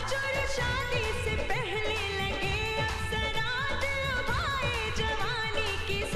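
Hindi film dance song: a sung vocal line with long, wavering held notes and glides over a steady drum and bass beat.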